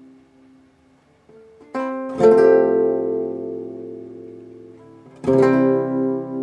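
Acoustic guitar chords strummed slowly and left to ring: a chord fades out, then new strums come about two seconds in and again near the end, each ringing and slowly dying away.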